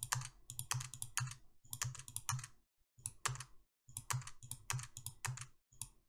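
Computer mouse and keyboard clicking in quick clusters, with brief silent gaps between them.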